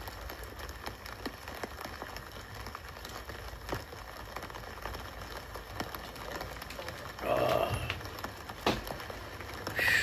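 A person drinking from a plastic water bottle: quiet swallowing and small crinkles of the thin plastic, with one louder sound lasting about half a second about seven seconds in and a sharp click near nine seconds.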